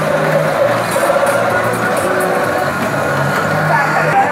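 Loud fairground ride music from a children's toy-car roundabout's speakers, with a bass line stepping between held notes.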